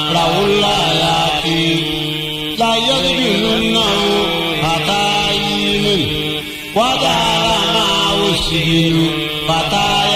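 Melodic Quranic recitation: one voice chanting in long held, gliding notes, with short breaths about two and a half and six and a half seconds in.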